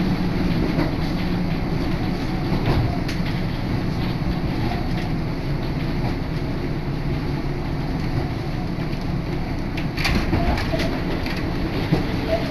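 Diesel local train running along the line, heard from inside the passenger car: a steady low rumble of engine and wheels on the rails, with a few sharp clicks from the track.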